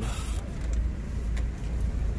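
Low, steady rumble of outdoor background noise, with a couple of faint clicks.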